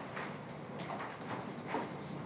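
A stylus tapping and scratching on a touchscreen during handwriting, a few short taps and strokes each second.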